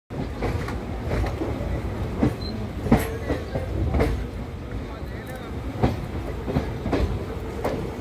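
Express train's coaches running along the track, heard from beside the moving coach: a steady low rumble with irregular sharp clicks of the wheels over the rails.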